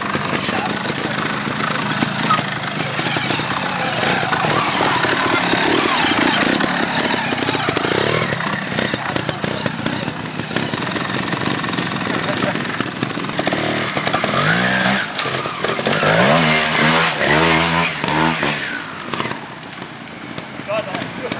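Trial motorcycle engines revving over a steady noisy background, with a run of rising and falling revs late on as a rider works the throttle.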